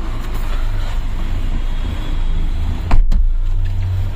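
A car running, heard from inside the cabin as a steady low rumble, with one sharp thump about three seconds in.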